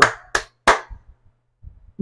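Two sharp strikes about a third of a second apart, each with a short fading ring.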